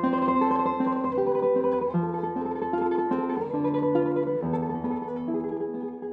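Solo guitar music: single plucked notes and chords ringing over one another, beginning to die away near the end.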